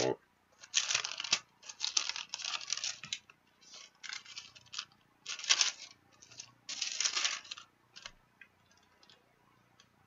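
Pages of a book being flipped by hand: quick, irregular bursts of paper rustling that die away after about eight seconds.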